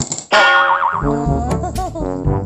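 Background music with an edited-in cartoon boing sound effect: a loud wobbling tone starts about a third of a second in and fades within about half a second, followed by wavering, sliding notes.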